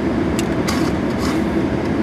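Steady rushing noise of a car's air-conditioning blower running in the cabin while the engine idles, with a couple of short slurps through a drinking straw in the first second.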